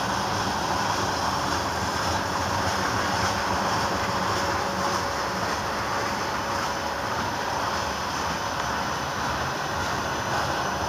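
Freight cars, a tank car and covered hoppers, rolling past close by: the steady rumble and hiss of steel wheels running on the rail.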